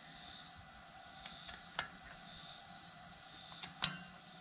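Steady high-pitched chorus of insects, with a faint click partway through and one sharp click near the end as a bottom bracket tool is seated on the splines of a disc-rotor lock ring.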